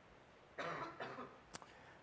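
A person coughing briefly, starting about half a second in, followed by a single sharp click.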